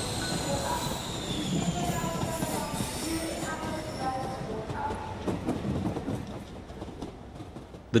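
Passenger train at a station platform: rail and wheel noise with a high steady whine that sinks a little in pitch over the first couple of seconds, fading away toward the end.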